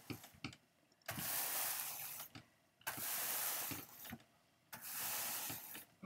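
A hand brush drawn down through wool fibres on a blending board's carding cloth: three long strokes of about a second each, with short pauses between.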